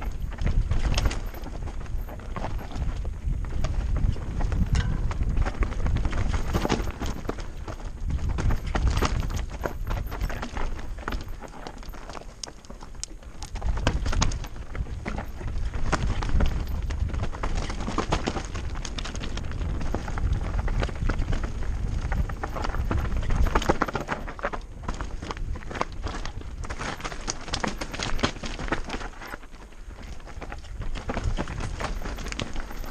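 Mountain bike descending a rocky trail of loose limestone: tyres crunching and knocking over stones in a dense, uneven clatter, with the bike rattling over the bumps. Wind rumbles on the camera microphone, louder at speed.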